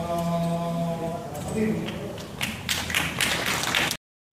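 A man singing a Javanese tembang holds a long note that ends about a second in. From about halfway, the audience breaks into clapping.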